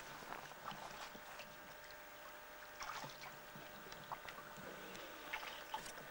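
Faint, steady rushing of a small stream, with a few scattered footsteps and light knocks.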